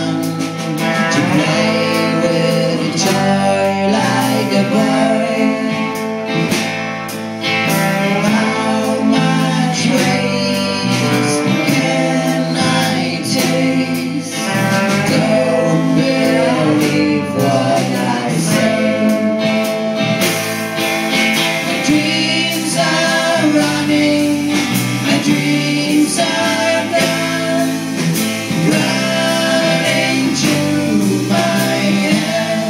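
Live indie rock band playing: strummed acoustic guitar, electric guitar, drum kit and violin, with a voice singing the melody.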